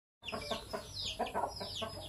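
Chickens clucking, with several high, falling chirps among the clucks.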